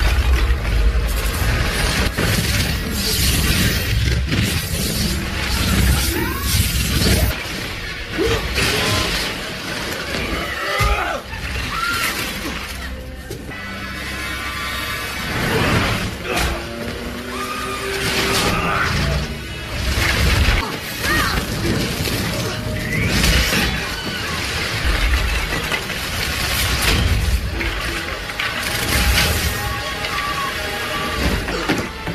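Action-film sound mix of repeated crashes and shattering debris over a music score, with dense impacts throughout.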